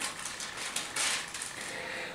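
Paper pages rustling as they are turned and handled, in several short bursts.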